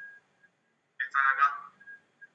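Speech only: a brief snatch of a voice about a second in, after a short pause, with a thin, phone-like sound.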